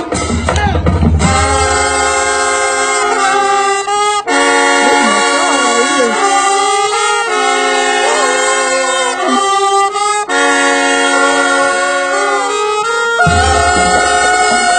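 High school marching band playing, its brass section sounding long held chords in phrases of about three seconds with short breaks between. Drums play under the start and come back in near the end.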